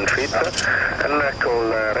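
Mostly speech: a pilot's voice reading back a radio frequency, over the steady background noise of the Boeing 737-700 flight deck, with a thin steady high whine running underneath.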